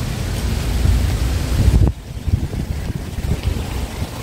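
Wind buffeting the camera's microphone: a loud, uneven low rumble with hiss, the hiss dropping away about two seconds in while gusty low rumbling goes on.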